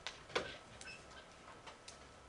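A few light, scattered clicks over quiet room tone, the sharpest about a third of a second in.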